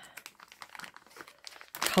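Clear plastic bag crinkling softly as fingers handle it, in light scattered rustles.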